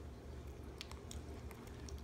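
Capuchin monkey chewing cake, faint soft mouth clicks and smacks over a low steady room hum.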